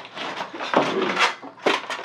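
Plastic bags and packaging crinkling as items are handled and unpacked, with a few sharp knocks and clicks as things are set down, about a second in and again near the end.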